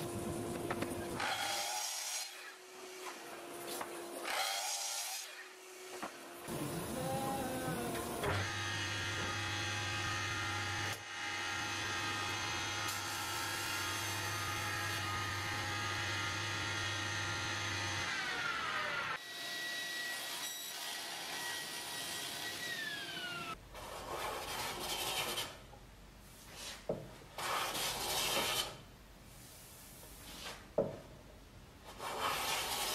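Benchtop jointer running steadily for about ten seconds as an ash board is passed over it, then winding down with a falling pitch. Another machine briefly runs and spins down, and a few short rasping strokes on the wood follow near the end.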